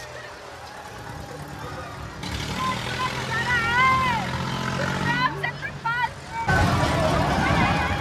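Fairground giant-wheel ride in motion: a steady low machine hum, then rushing wind on the microphone that builds about two seconds in and jumps suddenly louder near the end. In between come high wavering shouts from riders.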